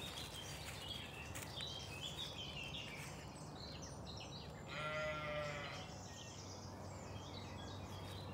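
Woodland birds chirping and singing, with a sheep bleating once just past the middle, a single high call about a second long and the loudest sound.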